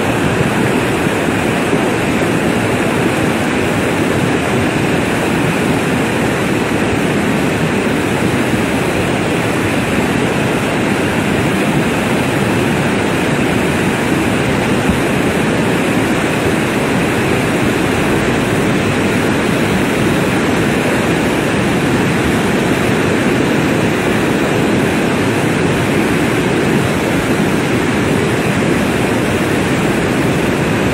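Huayco (mudflow) of muddy water and debris rushing down a sandy channel: a loud, steady rush.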